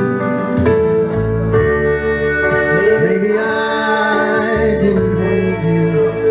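Live music on electric guitar, with a held bass line underneath and a melody that bends in pitch near the middle.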